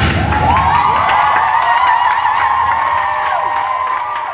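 Audience breaking into high-pitched cheering and screaming, many voices held and overlapping, with scattered clapping, starting just as the music cuts off at the end of a dance number.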